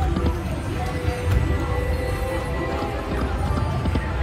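Video slot machine's game music and sound effects as the reels spin and stop, with short knocking clicks over a steady low thumping, against casino background noise.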